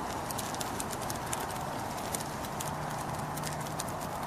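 Fire sound effect: a steady rushing hiss with many irregular, sharp crackles.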